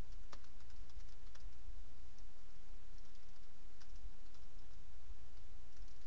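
Faint, scattered keystrokes on a computer keyboard, typing out a line of code, over a steady low hum.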